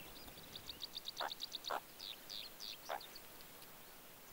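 Faint chirping calls of small animals: a rapid run of high chirps about half a second in, then scattered ones, with three short lower calls in between.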